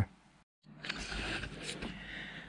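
A moment of dead silence at an edit cut, then faint rustling with a few light clicks, like parts or the camera being handled at a workbench.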